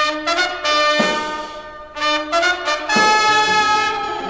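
Brass instruments, led by trumpets, playing a short musical interlude: held chords that enter sharply four times, about once a second.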